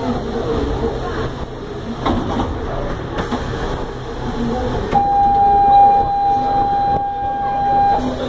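Murmur of passengers and interior noise inside a Buenos Aires Subte Line C car. About five seconds in, a steady high-pitched electronic tone starts and sounds for about three seconds: the train's door warning buzzer before the doors slide shut.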